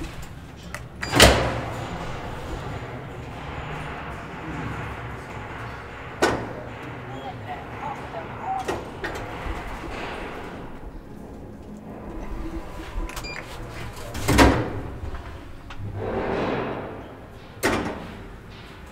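1929 ASEA traction freight elevator, modernised by Stockholms Hiss-service, on a ride: a loud clunk about a second in as it sets off, a steady hum with rattling rumble while the car travels, another heavy clunk about fourteen seconds in as it stops, and a further knock near the end.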